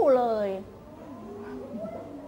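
A woman's voice drawing out the end of the spoken call "อู้ฮู… เลย" ("go oo-hoo") with a high pitch that slides down and ends about half a second in, a sing-song sound close to a cat's meow. Only faint background sound follows.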